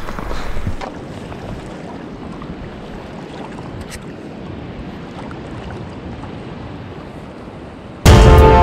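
Steady rush of a river's current flowing past, picked up close to the water's surface, with one faint click about halfway through.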